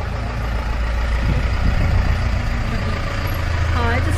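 Pickup truck's engine running at low speed as it pulls slowly in, a steady low rumble that grows louder over the first second or two.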